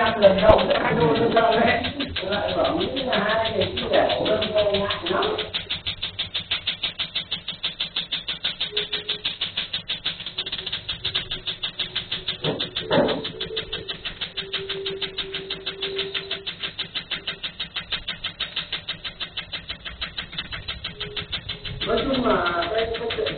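Tattoo-removal laser handpiece firing in a rapid, even train of snapping clicks, several pulses a second, as the tattoo is treated.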